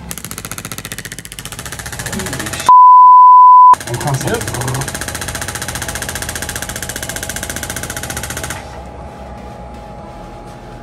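Radial shockwave therapy handpiece firing at 15 pulses a second against a slab of beef: a rapid, even stream of taps that stops about 8.5 seconds in. About three seconds in, a loud steady beep lasting about a second cuts out everything else.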